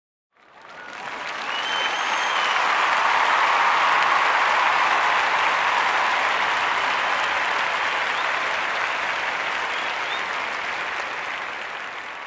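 Audience applauding, fading up over the first second and slowly dying away, with a brief high tone about two seconds in.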